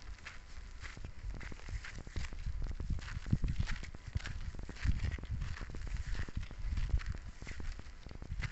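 Footsteps on a dirt footpath, irregular crunching steps, with wind buffeting the phone's microphone.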